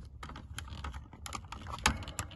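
Small clicks and creaks from the hard plastic clock and vent housing and its retaining clips as it is prised out of the dash, a tight fit, with one sharper click near the end.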